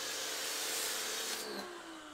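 Pressure washer spraying through a foam cannon: a steady hiss of spray over the pump motor's hum. About one and a half seconds in, the trigger is let go; the spray stops and the motor winds down with a falling whine.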